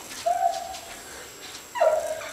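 A dog in boots whining twice: a short high whine about a quarter second in, then one that drops in pitch near the end.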